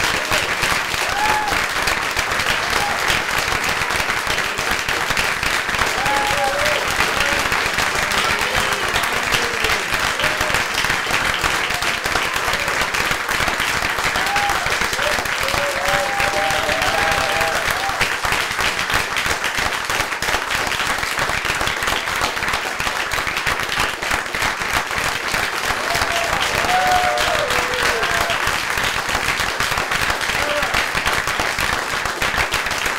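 Audience applauding, dense, steady clapping throughout, with a few voices heard briefly over it now and then.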